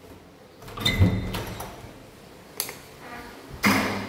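Interior door with a round knob being opened: a knock and a short ringing squeak about a second in, a click a little past the middle, and a louder clatter near the end.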